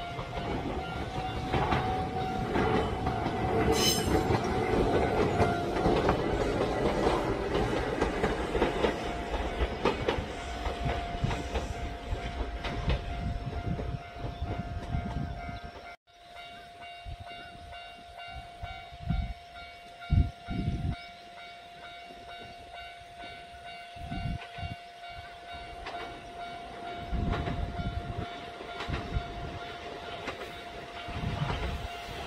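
Kintetsu electric train passing close by, its wheels clattering clickety-clack over the rail joints. About halfway through the sound cuts off abruptly, and a much quieter stretch follows with a few low thumps.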